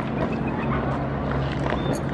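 A steady low mechanical hum, like an idling engine, under scattered light clicks and knocks from the drill team's rifles and boots.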